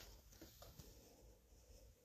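Near silence, with faint pencil shading strokes on paper.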